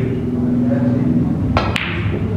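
A single sharp click of a snooker shot, about one and a half seconds in, as the cue ball is played up the table.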